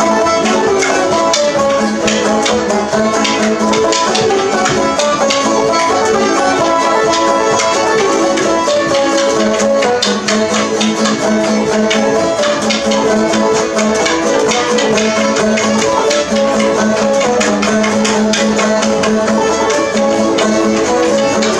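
Old-time string band playing a tune: quick banjo picking with a bowed fiddle and other plucked strings.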